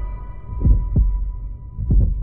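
Heartbeat sound effect in a horror-style intro soundtrack: two low double thumps, each a lub-dub, a little over a second apart. A thin high held tone from the music fades out under the first of them.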